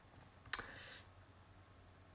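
A single sharp click about half a second in, trailing into a short hiss of about half a second, over faint room tone.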